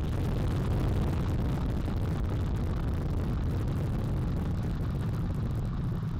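Space Launch System rocket at liftoff, its four RS-25 core-stage engines and two solid rocket boosters giving a loud, steady, deep rumble.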